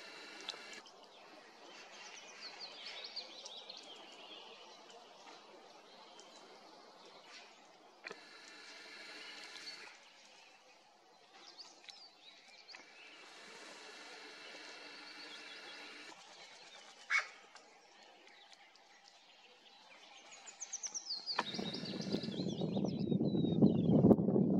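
Wild birds calling and chirping in a spring forest, with scattered short calls and a descending run of notes near the end. In the last few seconds a loud, rising rumble of wind on the microphone builds up.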